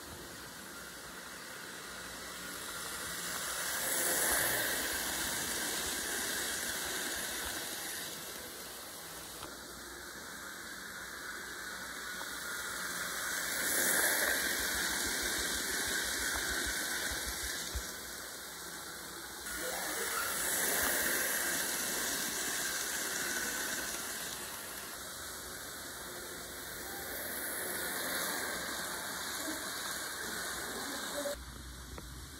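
N scale model train running around a loop of track: a whirring hiss from its motor and wheels on the rails that swells and fades about four times as the train passes close by.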